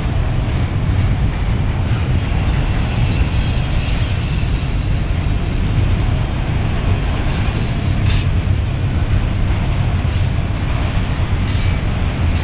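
Autorack freight cars rolling past at close range: the steady noise of steel wheels on the rails, with a brief sharper metallic sound about eight seconds in.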